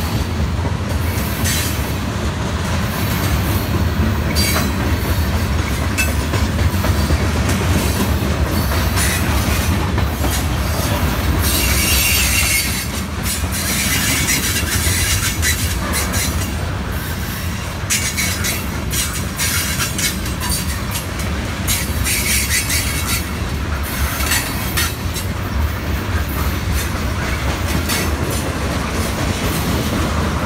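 Freight cars — tank cars and covered hoppers — rolling slowly past on steel rails with a steady low rumble and clacking wheels. High-pitched wheel squeals flare up several times, loudest about a third of the way through and again past two-thirds.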